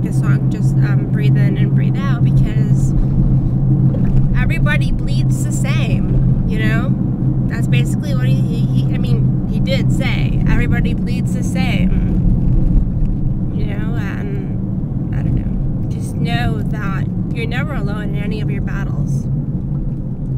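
Steady low engine and road drone inside a moving car's cabin, under a woman's talking.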